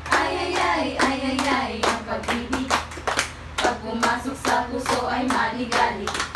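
A group of women singing together, accompanied by steady rhythmic hand clapping, about three claps a second.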